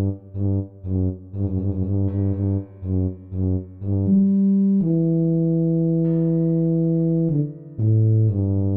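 Tuba playing a bass line of short, detached repeated notes with rests between them, then one long held note from about five seconds in until shortly before the end.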